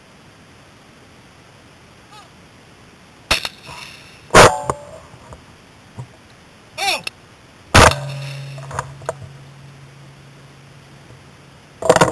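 Two shots from a Browning Silver 12-gauge semi-automatic shotgun, about three and a half seconds apart, each preceded about a second earlier by a short shouted call. A low steady hum follows the second shot for about four seconds.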